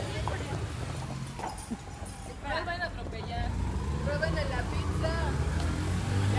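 Indistinct women's voices talking over a steady low rumble.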